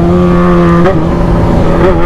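Yamaha XJ6's inline-four engine running loud and steady at moderately high revs under way, its note held almost level with two brief wobbles in pitch.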